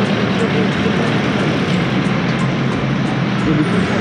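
Steady city street noise, mostly road traffic, with faint talking underneath.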